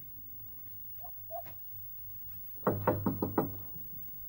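Knocking on a wooden door: about five quick raps in a row, starting some two and a half seconds in.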